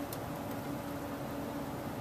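Steady background hiss with a faint low hum: room tone.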